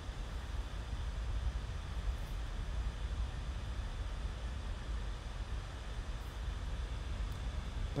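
A steady low rumble with a faint even hiss above it, unchanging throughout and without speech.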